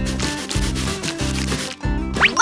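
A steady rubbing, scratching sound effect that stops shortly before the end, over background music.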